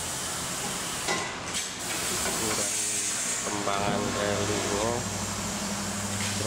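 Steady hissing background noise, with a voice talking briefly near the middle and a low steady hum setting in at about the same time.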